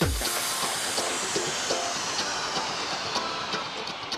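Sound-effect whoosh for an animated logo reveal: a sharp hit, then a long hiss that slowly falls in pitch, over soft background music.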